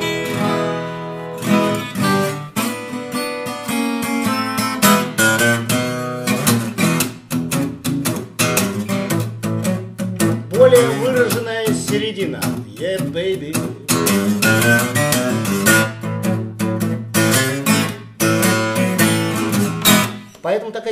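Small-bodied mahogany folk-shape acoustic guitar played solo, a busy passage of picked single-note lines and chords. The folk body gives a bright, clear tone that carries in a solo better than a dreadnought.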